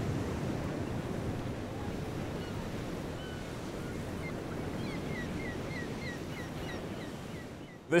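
Steady wind and water noise on the deck of a tall sailing ship, with a run of short, high, falling squeaks, about two to three a second, through the second half.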